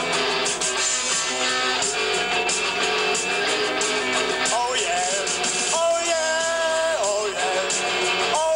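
A rock band playing live with distorted electric guitars, bass and drums. A little past halfway a long held note slides up into pitch and rings out over the band for about a second.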